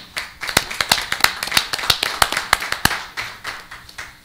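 A small crowd applauding after a student is honored: many overlapping hand claps, a few sharp, close ones standing out, dying away about three and a half seconds in.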